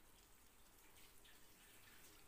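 Faint, steady sizzling of masala-coated raw banana slices shallow-frying in oil in a pan.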